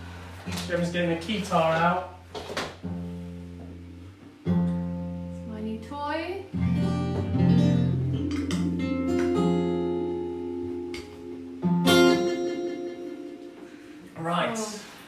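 Acoustic guitar chords played together with long held notes on a keytar synthesizer, with a voice heard briefly over the music; a hard strum lands near the end.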